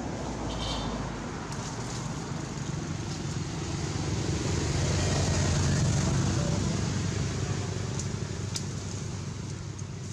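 A low rumble of a passing motor vehicle's engine, growing louder to its peak about halfway through and then fading.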